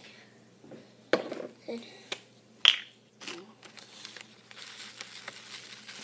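Several short, sharp clicks and taps, the loudest about two and a half seconds in, then a soft steady rustle as dry ingredients and their containers are handled.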